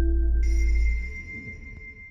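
Streaming-platform logo sting: a sustained electronic chime tone rings in about half a second in and holds, while the low music underneath fades away.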